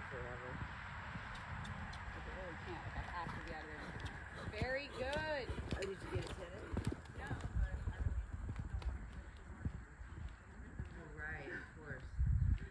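Hoofbeats of a horse cantering on sandy arena footing: an irregular run of dull thuds, heaviest about two-thirds of the way through.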